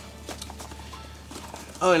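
Nylon hip pack being handled and pulled open by hand: faint fabric rustling with a few light taps.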